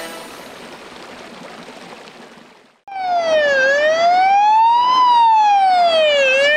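A fading hiss, then about three seconds in a fire brigade van's siren starts, loud and wailing, its pitch sliding down and up again about every one and a half seconds.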